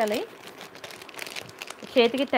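Plastic wrapping crinkling as it is handled: a run of quick, irregular crackles.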